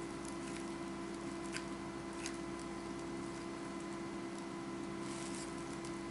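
Quiet room tone with a steady hum, and a few faint clicks as a small battery-powered LED light is handled and its switch tried.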